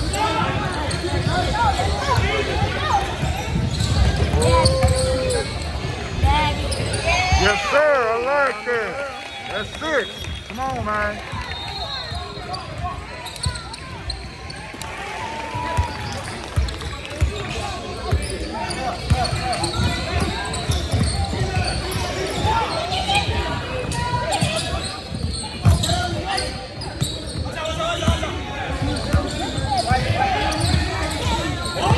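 A basketball bouncing on a hardwood gym floor during a game, with the voices of players and spectators calling out across the court.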